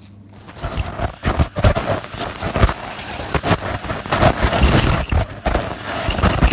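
Metal dental scaler scraping tartar from a cat's teeth: a rapid, continuous run of scratchy clicks and scrapes starting about half a second in, with a thin high whine coming and going.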